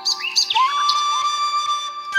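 Bamboo flute holding one long steady note that begins about half a second in, with a few quick bird chirps just before it.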